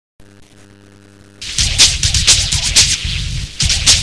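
A faint steady electrical hum, then about a second and a half in the song's loud electronic backing track starts, with a busy beat of sharp, hissy hits.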